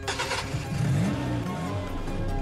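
Car engine started with a push button: a short burst of noise, then the engine catches and revs up and down about half a second in. Background music plays underneath.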